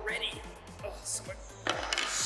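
Background music with a steady beat, about four beats a second, with a short burst of hiss near the end.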